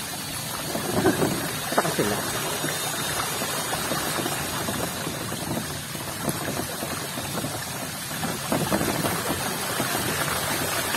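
Wheels of a sidecar rolling through shallow floodwater, a steady splashing and swishing of water thrown up by the tyres.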